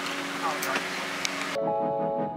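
Outdoor ambience with a steady low hum and faint voices, cut off suddenly about one and a half seconds in by background music with sustained keyboard notes.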